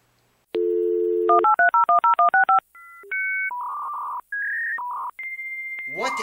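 Telephone sound effect: a dial tone, then about ten quick touch-tone digits being dialed, followed by a string of short electronic beeps and tones that ends in a long, steady high tone.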